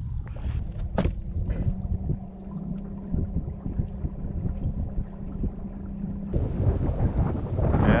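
Minn Kota Riptide electric trolling motor running with a steady low hum, with a click and a few short high electronic beeps about a second in. For the last second and a half, wind noise takes over.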